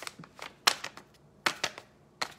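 A seasoning-mix pouch crackling and crinkling as it is handled and turned in the hands: a handful of short, sharp crinkles, the loudest about two-thirds of a second in.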